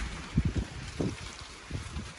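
Low wind rumble on the phone's microphone, with a few soft bumps.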